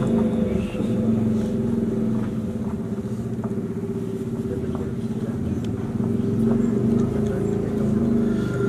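A man's voice through a microphone and loudspeakers, drawing out long melodic notes of Qur'an recitation that shift slowly in pitch without clear words.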